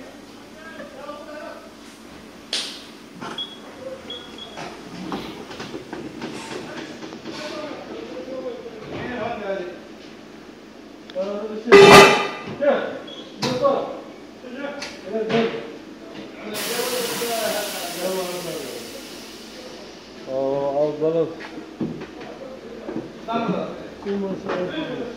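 Tyre-shop workshop noise around a wheel balancer: voices in the background, one sharp loud clunk about halfway through, then a hiss like escaping air for about three seconds.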